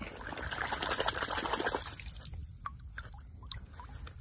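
Water sloshing and splashing as a gloved hand swishes a small plastic toy in shallow water to rinse the mud off. It stops about two seconds in, leaving a few drips as the toy is lifted out.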